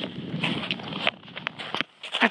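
Rustling noise of walking through snow with a handheld phone: wind and fingers rubbing on the microphone over crunching steps. It quietens after about a second, and there is a sharp click near the end.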